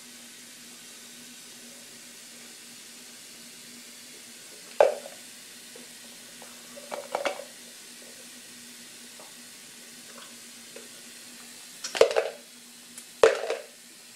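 A man drinking iced green juice from a plastic tub: a few short, sharp drinking sounds as he swallows and the ice knocks in the tub, the loudest two near the end. A steady low hum runs underneath.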